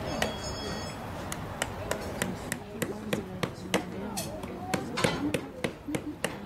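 A farrier's hammer tapping at a horse's hoof in a quick, even series of sharp strikes, about three a second, starting a second or so in.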